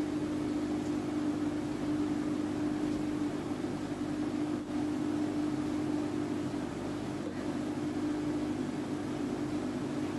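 A steady hum with an even hiss, one unchanging tone: constant room or machine noise.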